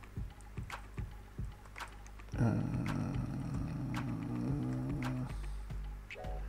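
Scattered keystrokes on a computer keyboard over quiet background music. About two and a half seconds in, a louder, low pitched sound is held for about three seconds, wavering in pitch near its end before it fades.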